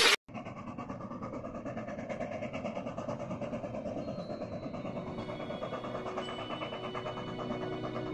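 Steam locomotive hauling a train, its exhaust chuffing in a rapid, even beat. Music fades in during the second half.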